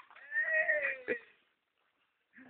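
One drawn-out vocal call, about a second long and falling slightly in pitch, ending with a short knock about a second in.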